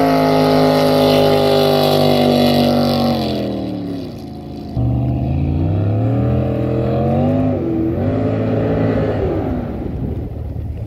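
582-cubic-inch, roughly 1000 hp jet boat engine running hard at high revs, its pitch sliding down about three seconds in. Just before the five-second mark it jumps back up sharply, revs rise and dip twice, then the pitch falls away near the end.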